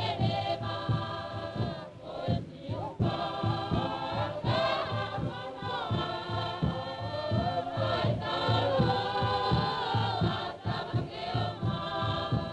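A choir of many voices singing sustained chords in harmony, over a steady low beat that keeps an even rhythm.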